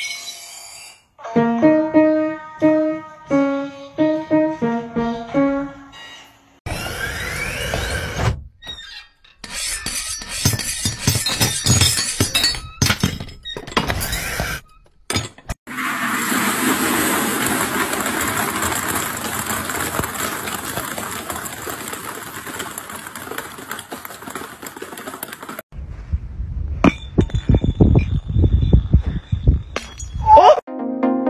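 A simple melody played note by note on a Young Chang piano for about five seconds. Then comes a string of unrelated sounds: clattering knocks, a steady noise lasting about ten seconds, and a burst of sharp clicks near the end.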